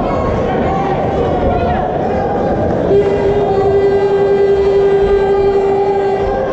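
Crowd noise from spectators at a cage fight: shouting and voices over one another. About halfway through, a steady held tone comes in and holds, louder than the crowd.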